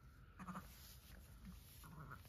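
Faint, short sheep calls from a ewe with her newborn lamb just after lambing: one about half a second in and two more near the end.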